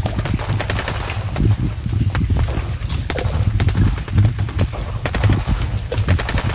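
Rapid, irregular clicks, cracks and knocks over a pulsing low rumble, from a person clambering through mangrove roots and branches close to the microphone.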